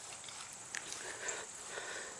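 Quiet outdoor ambience with a faint steady high hiss and a few light, soft clicks.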